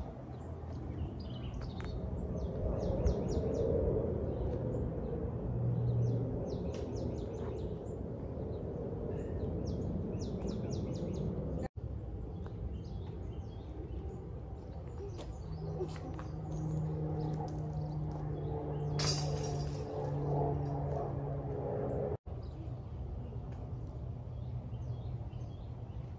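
Birds chirping in short, quick repeated series over steady outdoor background noise, with a low steady hum for several seconds in the second half and one brief sharp hit partway through it.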